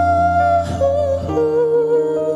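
A male singer's wordless hummed or vocalised intro into a microphone over an instrumental backing track: one long held note, then two lower notes, the melody stepping down.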